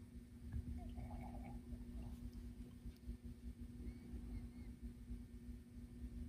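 Faint room tone with a steady low hum, and a few faint small sounds about a second in.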